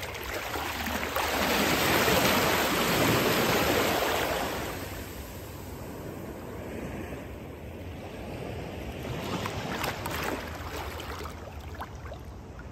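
Shallow seawater washing over the sand as a small, gentle wave comes in, swelling for a few seconds and then dying away, with a second smaller wash near the end.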